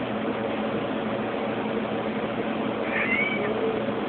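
A blue point Siamese cat meows once, a short high call about three seconds in, over a steady background hiss.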